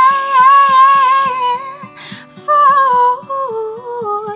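A woman singing a long held note with vibrato, a short breath about two seconds in, then a falling sung phrase, over steady picked acoustic guitar notes.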